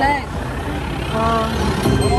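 Slot machine in a free-games bonus round: short electronic tones held for about half a second as the reels land, about a second in, over the steady noise of a busy casino floor.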